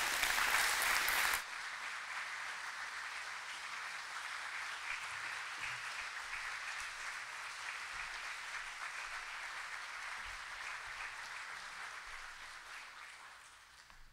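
Church congregation applauding, loudest in the first second or so, then steady clapping that fades out near the end.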